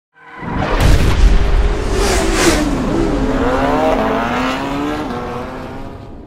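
Intro sound effect that swells up quickly: a deep rumble with sharp whooshes about one and two seconds in, and a held tone that slides lower midway, fading out near the end.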